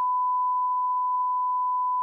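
Steady 1 kHz line-up test tone, a single unbroken pure beep that accompanies SMPTE colour bars.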